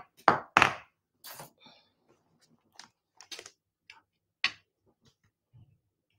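Sharp taps and knocks on a craft table, the two in the first second loudest, then lighter clicks and handling noises with one more distinct tap about four and a half seconds in, as an inked stamp on its acrylic block is cleaned off.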